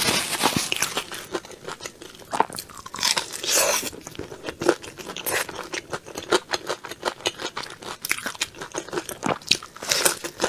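Close-miked chewing and biting of sauce-glazed fried chicken: irregular crunching of the batter coating mixed with wet, sticky mouth sounds.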